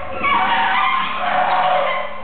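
Free-improvised music: saxophone and a second reed wind instrument play wavering, gliding high tones over live electronics and a steady low hum.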